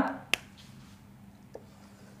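A whiteboard marker being handled: one sharp click about a third of a second in, then a fainter tap about a second and a half in, over a quiet room.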